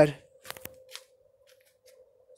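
A spoken word trailing off, then two or three faint clicks about half a second in, then near silence with a faint steady tone.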